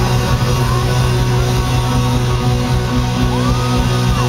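A live rock band playing loudly: distorted electric guitar and bass holding a low chord, recorded from within the crowd. A short rising-then-falling whistle sounds near the end.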